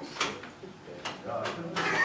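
A man's faint voice and laughter, with a few short knocks or clicks.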